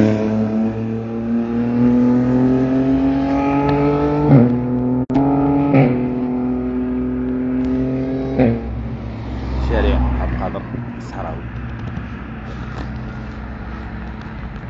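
A passing motorbike engine running with a steady pitch that climbs slowly and dips sharply at about four, six and eight and a half seconds in, then fades away.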